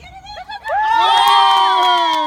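Sideline spectators breaking into loud, high-pitched screaming and cheering at a goal in a youth soccer game. It starts about half a second in, with several voices held together.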